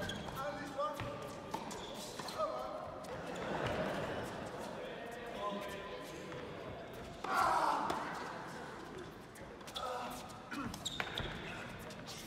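Tennis ball struck by rackets and bouncing on an indoor court during a rally, sharp knocks that echo in a large hall, with spectators' voices throughout. About seven seconds in comes a loud burst of crowd noise that fades over a second.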